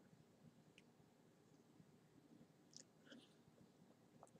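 Near silence: faint room tone with a few soft clicks a little past the middle.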